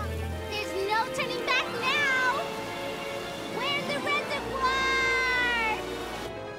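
High, wordless cartoon cries, likely the children's voices, swooping up and down in pitch over background music. A long falling cry comes near the end.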